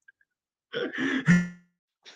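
A man's short non-speech vocal sound, about a second in: a breathy, throaty burst ending in a brief low voiced tone.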